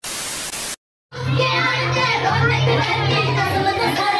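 A brief burst of TV-static hiss under a colour-bar intro card, cut off sharply. After a moment's silence, dance music with a steady bass line and singing starts about a second in.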